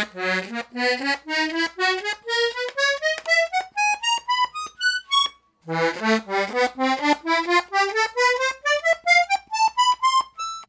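Red Hohner Double Ray two-row diatonic button accordion in B/C, with two sets of reeds on the treble side, played one note at a time up the treble buttons: a rising run of short notes, a brief pause about five seconds in, then a second rising run.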